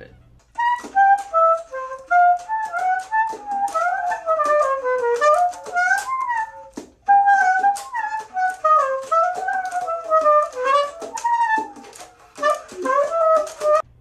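Saxophone playing fast jazz lines in two phrases, with a brief break about seven seconds in.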